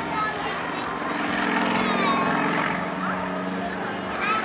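Single-engine aerobatic propeller plane droning overhead during aerobatics, its engine note shifting slightly in pitch, with people talking close by.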